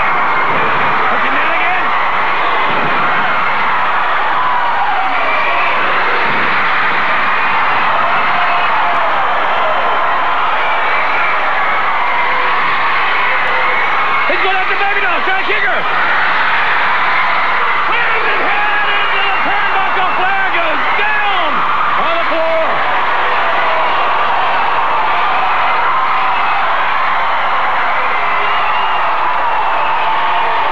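Large arena crowd cheering and yelling steadily, many voices overlapping.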